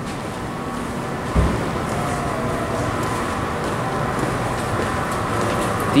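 Steady rumble of vehicle noise, with a single low thump about a second and a half in, after which it runs a little louder.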